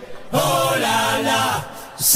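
Voices chanting a sung phrase: one held, gently bending line that starts about a third of a second in and fades near the end.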